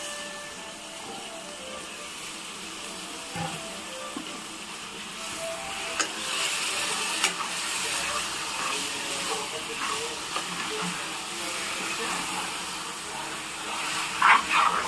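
Marinated mutton sizzling in hot oil in a pressure cooker as it is turned with a steel spoon; the sizzle grows louder about five seconds in, with a few sharp clicks of the spoon against the pot.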